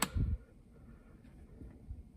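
A sharp click as the slide switch on a handheld K-type thermocouple meter is flipped, here the °F/°C selector, followed by a short low thump. Then quiet room tone.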